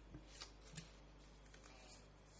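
Near silence: room tone with a steady low hum and a few faint, short rustles, the clearest about half a second in and just under a second in.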